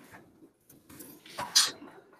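Several brief rustling, knocking noises, the loudest about one and a half seconds in, over a faint low room murmur.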